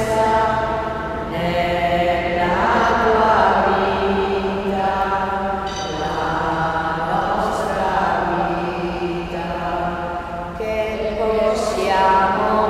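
Slow sung liturgical chant in long held notes, moving from note to note every second or two.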